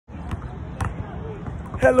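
A basketball bouncing on a hard court: two sharp bounces about half a second apart, then a voice starts near the end.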